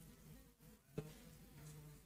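Near silence: faint steady electrical hum of room tone, with one brief soft click about a second in.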